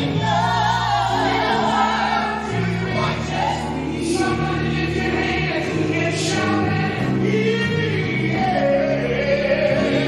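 Gospel praise team singing, male and female voices through microphones. Their voices are carried over a low instrumental backing of held notes that change every second or so.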